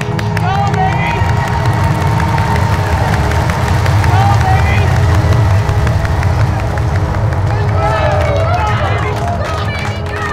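Low rocket-launch rumble that builds to its loudest midway and eases toward the end, with a crowd cheering, shouting and clapping over it and music underneath.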